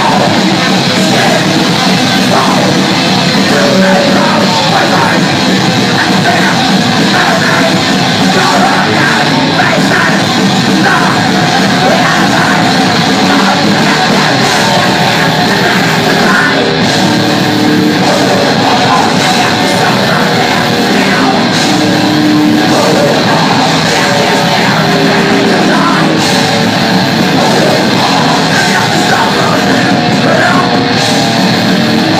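A live thrash metal band playing at full volume: distorted electric guitars, bass and a pounding drum kit, with shouted vocals over them. The mix is loud and steady throughout, with no break.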